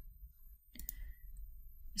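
A faint single click of a computer mouse a little under a second in, over quiet room tone.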